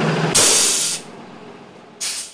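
School bus diesel engine running, then a loud burst of air hiss from its air brakes about half a second in, lasting about half a second before dying down to a fainter hiss.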